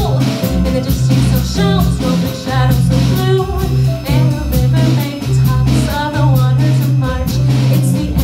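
A woman singing a jazz bossa nova song into a microphone, with live piano accompaniment and a line of held low bass notes under the voice.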